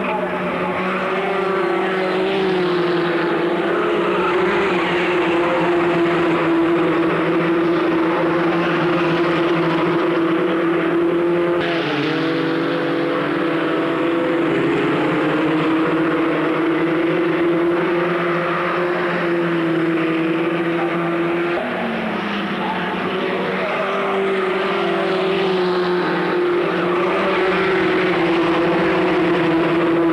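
A pack of Formula Ford 1600 racing cars running hard, several Ford Kent 1.6-litre four-cylinder engines at high revs overlapping. The engine pitch dips sharply about twelve seconds in and shifts again a little after twenty seconds as the cars change gear through the corners.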